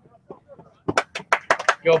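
A quick run of about seven sharp clicks, starting about a second in.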